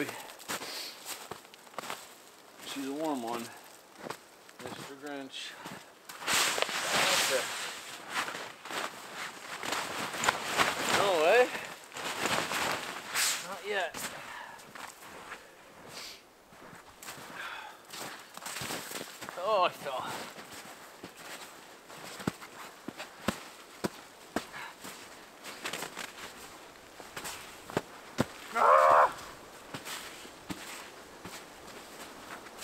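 Snow being dug and scraped away by hand and with a small shovel, with crunching steps in deep snow, in irregular bursts. A few short vocal sounds from the digger break in between.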